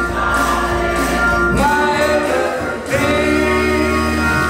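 Church choir singing a gospel song over organ accompaniment, holding long notes.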